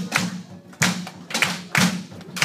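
Rhythmic hand clapping with a thud on each beat, keeping a steady pulse of about two strokes a second.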